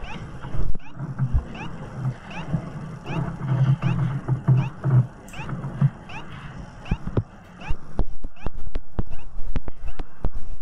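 Classroom room sound: a low murmur of voices with no clear words, under a short high chirp that repeats about twice a second. From about seven seconds in come a run of sharp taps and clicks, fitting a pen drawing on a tablet screen.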